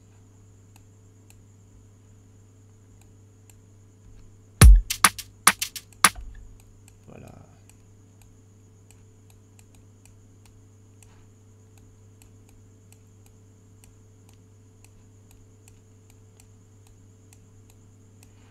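Steady electrical hum with faint mouse clicks. About four and a half seconds in comes a quick run of about six sharp percussive hits, the first with a deep thud.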